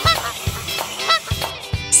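Duck quacking sound effect, short pitched quacks repeating about twice a second, over background music with a steady beat.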